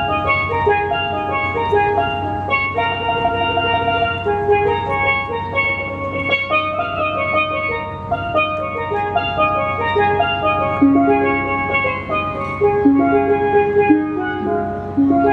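A pair of steel pans played live in quick melodic runs of short, ringing notes, with tabla accompaniment.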